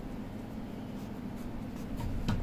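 Ballpoint pen writing words on a lined notebook page: quiet strokes of the pen tip on paper.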